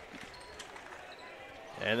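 Basketball bouncing on a hardwood gym floor, a few faint thuds early on, under the quiet hum of the gym.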